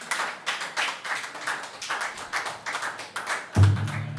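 Rhythmic hand claps keeping a steady beat, about four a second, with little else under them. Near the end a loud bass guitar note comes in.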